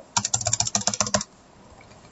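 A fast run of keystrokes on a computer keyboard, about a dozen strokes a second, stopping a little over a second in.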